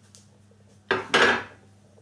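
Metal baking trays clattering against each other once, briefly, about a second in.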